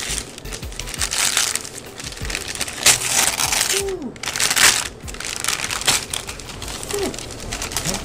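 Shiny foil gift wrap crinkling and tearing in irregular bursts as a present is ripped open by hand. The loudest rips come about three seconds in and again around four and a half seconds.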